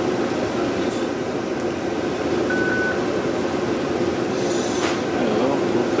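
Steady fan or air-handling noise, with a short high beep about halfway through and a couple of faint ticks.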